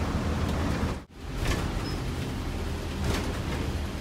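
Bus engine and road noise heard from inside the cab while driving, a steady low rumble. It cuts out abruptly for a moment about a second in, then carries on.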